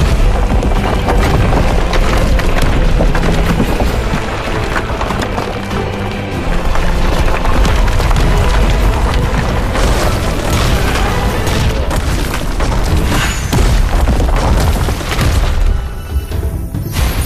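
Loud animation sound effects of conjured rock rising from the ground: a heavy, continuous deep rumble with a few stronger impacts in the second half, mixed with the dramatic soundtrack music.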